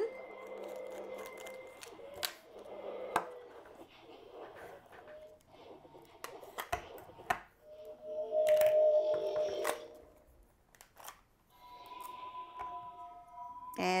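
Galaxy's Edge Jedi holocron toy giving out held electronic tones as a green kyber crystal is put into it, registering the crystal. Plastic clicks and taps come from the holocron and crystal being handled. A louder tone sounds about eight seconds in, and another set of steady tones plays near the end.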